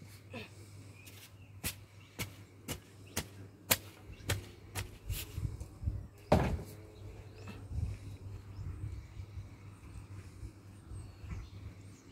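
Gloved hands digging in loose garden soil: a run of sharp clicks about two a second, then one heavier thump about six seconds in, followed by softer scattered scrapes.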